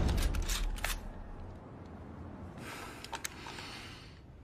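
A low boom dies away, with several sharp mechanical clicks during it, then a short rustling noise with a couple more clicks about three seconds in.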